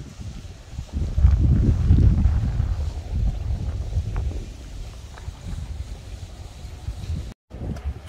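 Wind buffeting the microphone of a handheld camera while walking: a low, gusty rumble, loudest about a second to three seconds in, then easing off.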